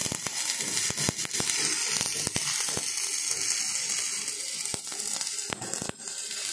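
Electric welding arc burning on steel: a steady crackling sizzle peppered with sharp pops, breaking off for a moment just before the end.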